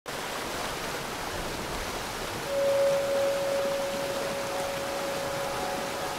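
Steady rushing of a waterfall pouring into its plunge pool. About two and a half seconds in, a single held musical tone comes in over it and slowly fades.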